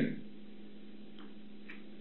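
A pause in speech filled by a steady low electrical hum and faint room noise, with two faint ticks in the second half.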